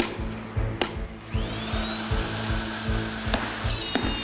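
Two sharp hammer knocks, then a hand-held electric router spinning up with a rising whine that settles to a steady high pitch and stops about three seconds in. Background music with a steady beat runs underneath.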